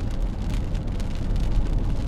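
Steady road noise inside a moving car on wet pavement: a low rumble of tyres and engine, with faint scattered ticks over it.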